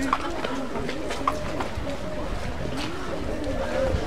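Outdoor street ambience: faint voices of people talking at a distance, over a steady low rumble.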